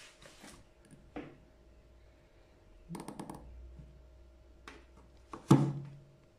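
Bassoon reed tip cutter (guillotine) being worked on a cane reed: faint handling noises, a quick cluster of sharp clicks about three seconds in, and a louder sharp knock near the end as the blade comes down on the reed tip.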